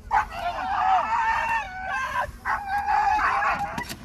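A dog yelping and shrieking in distress during a dog attack, in two long bouts of wavering high cries; the second bout starts about two and a half seconds in.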